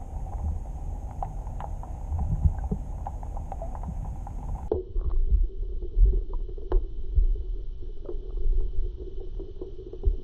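Muffled low rumble of water moving against an underwater camera housing, with scattered small clicks and knocks. About halfway through, the background hum changes abruptly.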